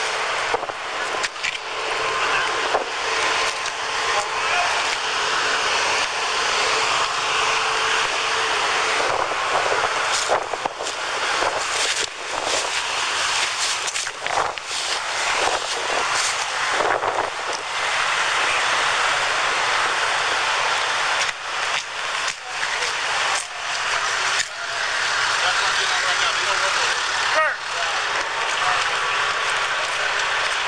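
Rustling and knocking of a body-worn camera as its wearer walks, over a loud steady hiss of outdoor noise.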